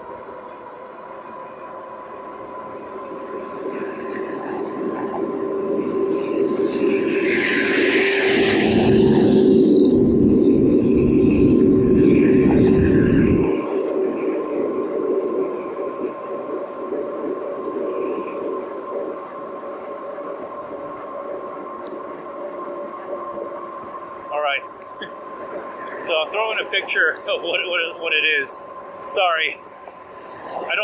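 Electric bike under way at speed: a steady motor whine, with wind rumbling on the microphone that builds to its loudest about eight to thirteen seconds in, then drops off suddenly. Short irregular sounds and a few sharp clicks come near the end.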